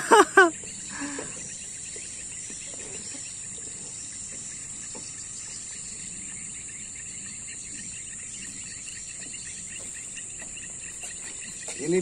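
Steady high-pitched chorus of insects, such as crickets, running without a break. A short voice burst at the very start is the loudest moment.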